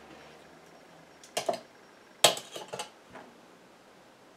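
Small glass jar being handled at a kitchen scale: a few light clinks and taps. A double click comes about a second and a half in, the sharpest one a little past two seconds, and a few fainter taps follow.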